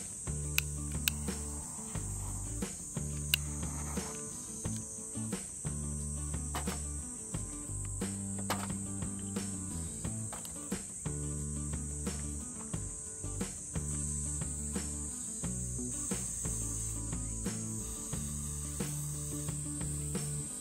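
A steady, high chorus of cicadas over background music of low, repeating sustained chords, with scattered short clicks and knocks.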